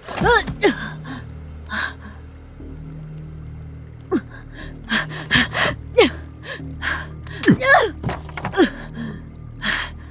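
A series of sharp strikes, unevenly spaced, as a boy is beaten. Each strike draws a short pained cry or gasp that falls in pitch. A low steady drone of background music runs underneath.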